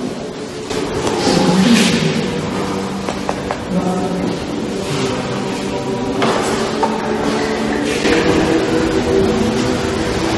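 Music with slow, held chords that change every second or two, over a steady noisy background with a few short rustling noises.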